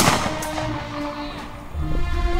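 A single gunshot right at the start, its echo dying away over about half a second, with background music continuing underneath.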